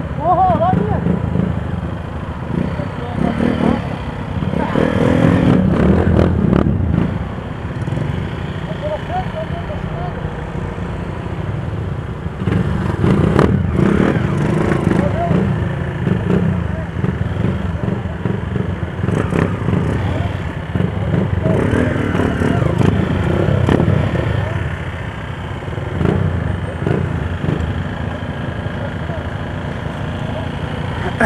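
Motorcycle engines idling and pulling away at low speed, the nearest the single-cylinder engine of a Honda CG Fan 150 fitted with an aftermarket Torbal Racing exhaust, running in a steady low rumble that swells a few times as the bikes move off. People's voices talk over it.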